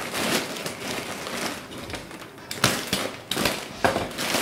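Thin black plastic bag rustling and crinkling in irregular bursts as it is pulled off a package by hand, with a brief lull a little past the middle and sharper crackles near the end.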